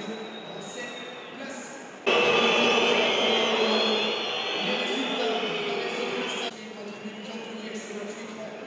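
Footballers and staff shouting and cheering in celebration of a late winning goal, a mix of excited voices. A much louder burst of shouting cuts in about two seconds in and stops abruptly about four seconds later.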